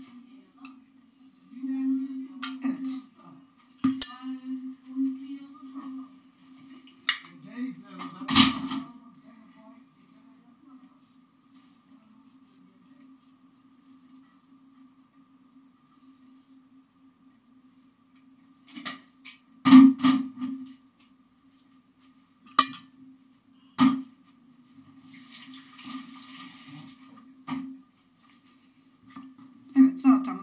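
A metal fork and ceramic dishes clinking: a handful of sharp clinks in two clusters, with a quiet stretch between them, over a steady low hum.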